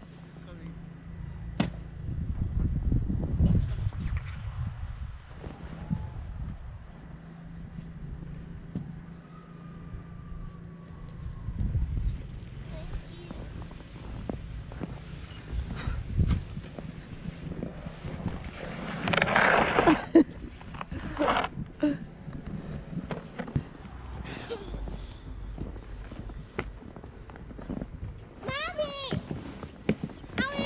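A plastic sled scraping and sliding over snow, loudest about two-thirds of the way through, with low rumbling on the microphone in between.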